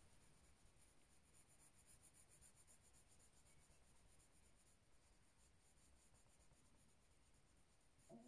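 Near silence with the faint scratch of a watercolour pencil scribbling colour onto stamped cardstock, mostly in the first half.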